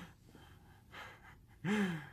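A young man's breathing, with a soft breath about a second in and a short voiced gasp near the end whose pitch rises and then falls.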